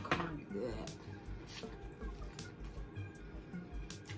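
Close mouth sounds of biting into and chewing corn on the cob, with a few sharp crunchy clicks scattered through, over background music.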